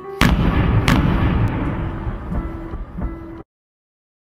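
Fireworks exploding: two loud bangs a little over half a second apart, then a long crackling, rumbling tail with smaller pops, which cuts off abruptly about three and a half seconds in.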